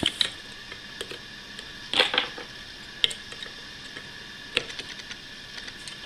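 Small screwdriver clicking and scraping against the plastic hub and circuit board of a brushless DC computer fan as the board is pried out. There are a few scattered clicks and scrapes, the loudest cluster about two seconds in.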